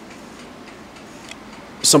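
A pause in a conversation with only a faint steady hiss of room noise. A man starts speaking near the end.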